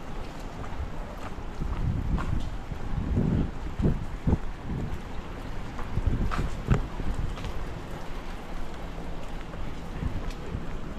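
Wind buffeting the microphone in uneven gusts: a low rumble that swells in the middle few seconds, with a handful of sharp knocks.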